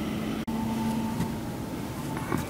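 Steady low hum of room noise, like ventilation, with a brief dropout about half a second in.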